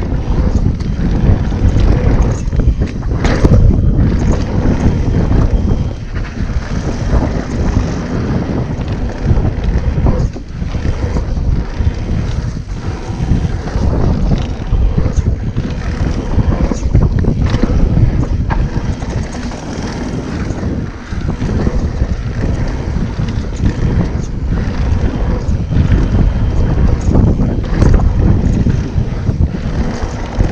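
Wind buffeting the rider-mounted camera microphone while a mountain bike rolls fast over a dirt trail, a steady low rumble from the tyres and ground, with scattered short knocks and rattles as the bike hits bumps.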